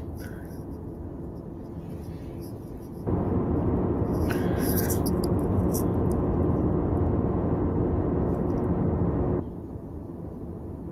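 Steady low hum and hiss of grainy security-camera footage audio. About three seconds in it jumps abruptly to a louder, rougher static with a steady low drone, which cuts back to the quieter hum shortly before the end.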